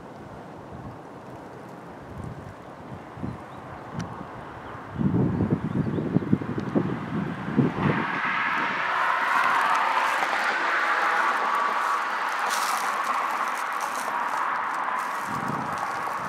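Wind buffeting the camera microphone in low rumbling gusts for about three seconds. Then a steady rushing noise swells, peaks and slowly fades.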